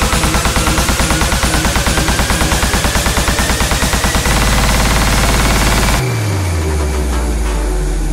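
Uplifting trance build-up: a fast drum roll under a slowly rising synth sweep, the roll tightening into a held bass about four seconds in. About six seconds in the high end falls away and a bass note glides down in pitch.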